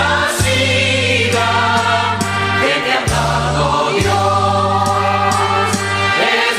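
Music with a choir singing long held notes over a steady bass line.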